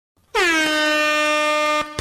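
Air horn sound effect: one long, loud blast of about a second and a half that dips slightly in pitch as it starts, holds a steady note, then cuts off suddenly.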